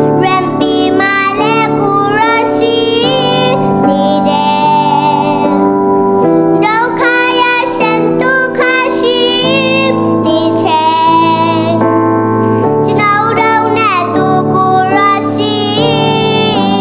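A young girl singing a song, accompanied by a Yamaha MX88 electronic keyboard holding steady chords beneath her voice.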